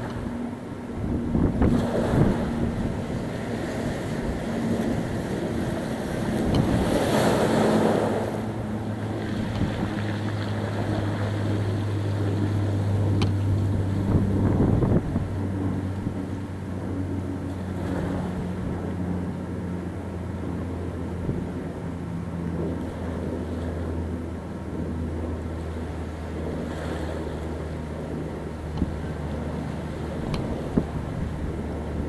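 A low, steady engine drone runs under the wash of sea waves and gusts of wind on the microphone, with a louder rush of noise about seven seconds in.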